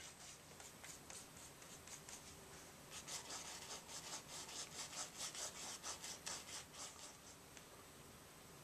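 A paintbrush rubbing and dabbing paint onto a stretched canvas: light scrubbing at first, then quick short strokes, about three a second, for the second half.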